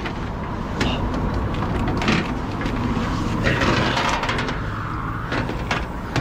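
A truck's diesel engine idling steadily, with short knocks and rattles from coiled air and electrical leads being handled.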